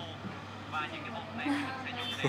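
Quiet, indistinct talk in short stretches over a steady low hum.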